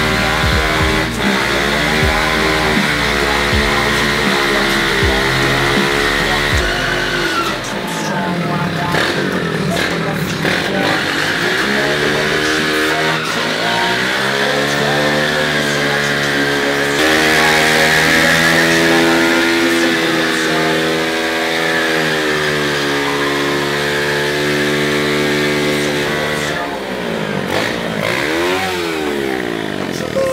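Small Masai dirt bike's engine revved hard again and again, its pitch climbing and falling in long sweeps, with music playing underneath.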